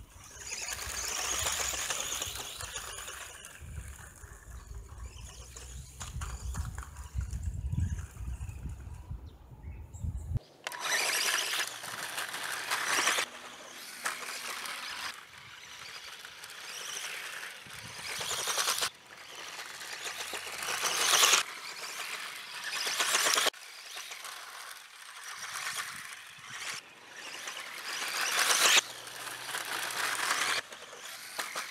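Electric RC buggy (Tamiya Grasshopper II type) driving on a dirt track: the motor whines in repeated surges as it accelerates and lets off, with the tyres scrabbling and throwing dirt.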